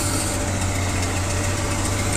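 Heavy diesel truck engine idling steadily, a low hum with a faint steady whine above it.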